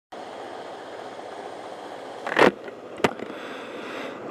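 Steady city street traffic noise, with a short loud rush of noise about halfway through and a single sharp click near the end.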